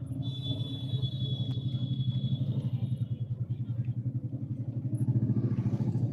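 A motor-vehicle engine running close by in traffic: a loud, low, rapid throb that grows a little louder toward the end. A thin, high, steady tone sounds over it for the first three seconds.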